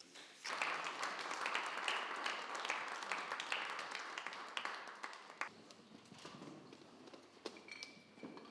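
Audience applauding. The applause starts about half a second in and is strongest for the first few seconds, then thins out to scattered claps in the second half.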